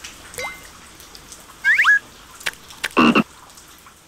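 Cartoon frog giving one short, loud croak about three seconds in. Before it come a couple of quick rising squeaks from the startled larvae.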